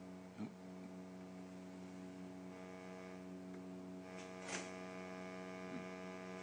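Guitar's lowest string sustained by an EBow, a steady tone rich in overtones, held in tune at F sharp (about 92.5 Hz) after a stepper motor has turned the tuning peg. Two brief soft noises sound over it, about half a second in and about four and a half seconds in.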